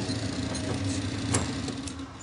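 Small bag-packaging machine running: a steady low motor hum with a sharp mechanical click about 1.3 s in and a fainter one just before the end, as the motor winds down.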